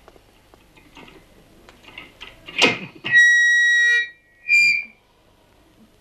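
Microphone feedback from a small PA: a steady high squeal held for about a second midway, then a shorter, wavering squeal. A brief louder sound comes just before the first squeal.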